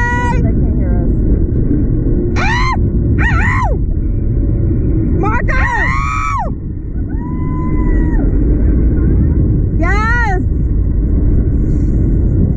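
Women riders on a Slingshot reverse-bungee ride letting out short, wavering screams and whoops about five times, one of them held longer, over steady heavy wind rushing across the ride-mounted microphone as the capsule swings.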